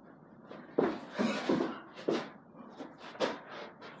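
A man panting and gasping hard in a run of short, rough breaths, out of breath midway through a set of burpees.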